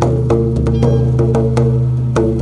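Double-headed barrel hand drum played in a steady rhythm, about three ringing strokes a second, over a steady low drone.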